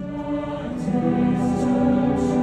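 A choir singing with a string orchestra and harp, in long held notes that grow louder about a second in.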